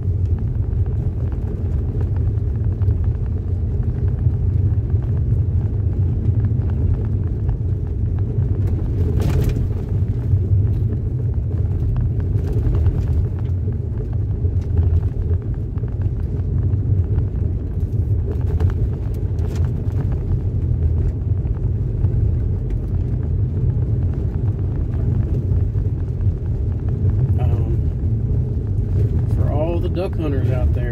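Car cabin road noise from driving slowly on a wet, unpaved dirt road: a steady low rumble of tyres and a stiff sports suspension, with a few brief knocks from bumps in the road.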